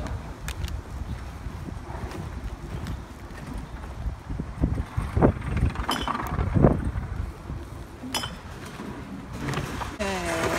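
Low rumbling handling and wind noise from a phone being carried outdoors, with a few light clinks and knocks scattered through it; the loudest knocks come about five and six and a half seconds in.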